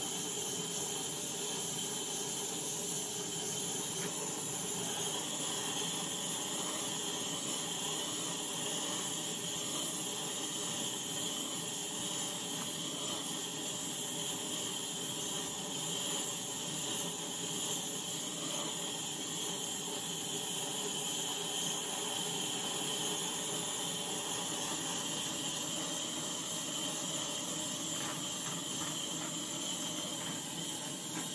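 Handheld gas torch burning with a steady hiss, its flame played over wet acrylic pouring paint to bring silicone cells to the surface.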